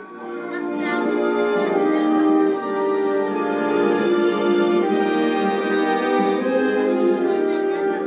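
A national anthem in a slow orchestral arrangement, brass and horns holding sustained chords, swelling in over the first second. Heard through a television's speaker in a small room.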